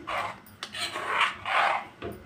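Metal spoon stirring thick curry gravy in a pan, scraping through it in about four strokes.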